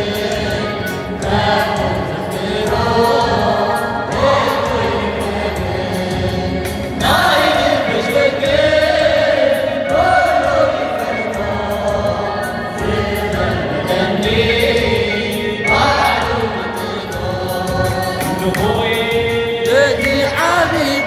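A choir singing an Eritrean Catholic hymn (mezmur), with new sung phrases entering about seven, ten and sixteen seconds in.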